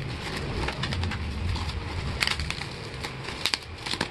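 Plastic wrapping crinkling and rustling as it is pulled off a cardboard box by hand, with a few sharp crackles and some handling bumps.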